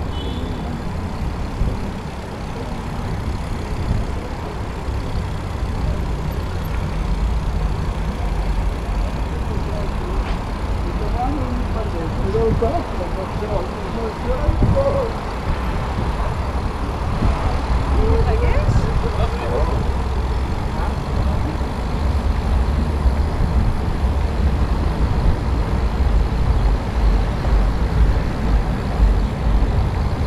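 Riding noise on a bicycle-mounted camera: a steady low rumble of wind on the microphone and tyres rolling over stone paving, with faint voices in the middle stretch.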